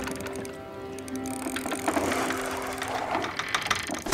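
Soft music with long held notes, over a fishing reel's ratchet clicking in quick runs, thickest in the second half.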